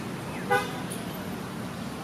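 A short vehicle horn toot about half a second in, over a steady hum of street traffic.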